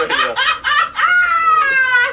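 A man laughing hard: a quick run of short laugh bursts, then about a second in a long, high-pitched held squeal, a shriek that sounds almost like a rooster crowing.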